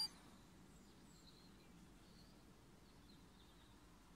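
Near silence: faint outdoor background hiss with a few faint, short high chirps scattered through.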